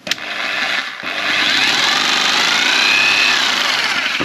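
Einhell TC-RH 800 4F 850 W rotary hammer drill switched on with a click and running free with no bit load, its motor whine rising in pitch and easing back down near the end. It is running below full speed, its speed dial turned down.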